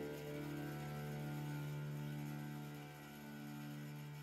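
The last chord of a prepared harp quartet ringing on faintly as the piece dies away, held tones fading out slowly.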